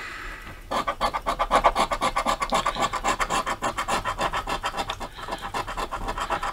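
Scratch-off lottery ticket being scraped, the coating rubbed away in rapid, even back-and-forth strokes. The scratching starts about a second in and eases off near the end.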